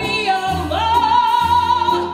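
A female singer performing a song live with a jazz ensemble and orchestra. She holds one long high note through the second half.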